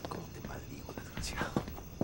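A few soft footsteps on a hard floor, with a short breathy exhale, like a whisper, a little past a second in.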